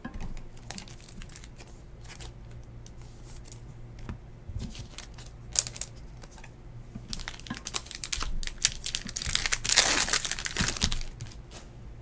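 Trading cards being handled and set down with scattered light taps, then a foil card-pack wrapper crinkling and tearing open, loudest about ten seconds in.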